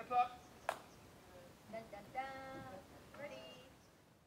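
Faint, distant human voices, with a couple of drawn-out calls, and a single sharp click under a second in.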